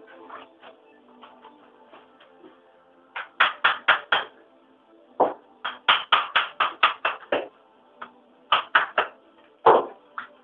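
Hammer striking broken brick and stove-tile rubble in quick runs of sharp blows, with the loudest blow near the end.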